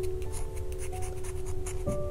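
A wooden pencil being sharpened: a rhythmic run of short, scratchy rasps, about five a second. Soft instrumental music with sustained notes plays underneath.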